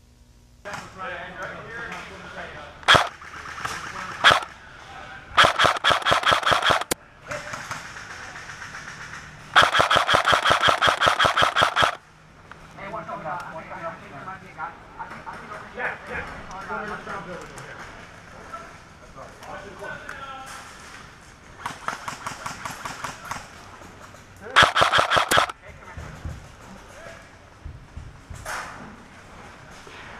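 Airsoft electric guns firing rapid full-auto bursts: several strings of fast, evenly spaced cracks, the longest lasting about two seconds, with a couple of single sharp shots in the first few seconds.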